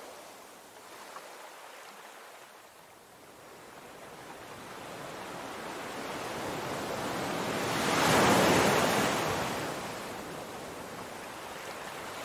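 Ocean surf breaking on rocks: the wash swells slowly, peaks loudest about eight seconds in as a wave breaks, then recedes.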